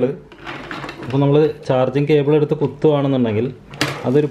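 A man talking in Malayalam, with one sharp click near the end.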